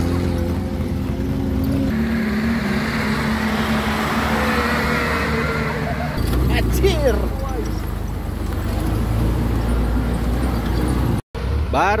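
Open-top jeep's engine running steadily under load on a rough, muddy dirt track, its pitch shifting about two seconds in. A brief voice cries out around the middle, and the sound cuts off abruptly near the end.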